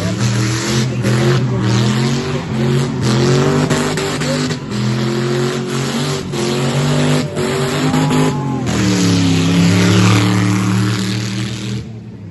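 Nissan Tsuru race car's engine revved hard again and again, its pitch climbing and dropping repeatedly with short sharp breaks between pulls.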